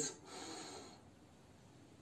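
A man's deep chest in-breath, a soft rush of air lasting under a second and fading into near silence. It is the ordinary deep breath that fills the upper lungs without pressing on the diaphragm, not a diaphragm breath.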